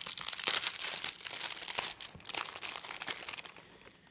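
Product packaging crinkling and crackling as it is handled and opened. The crackles are dense at first and die away near the end.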